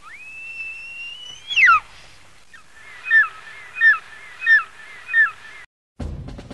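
Bird-of-prey screech used as an eagle cry: one long, high call that rises, holds and then drops sharply, followed by four shorter falling calls about two-thirds of a second apart. It cuts off abruptly just before the end.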